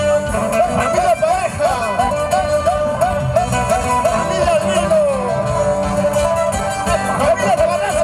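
Andean toril music played live by a string band with acoustic guitars, with a high melody line wavering in quick, repeated swoops over a steady accompaniment.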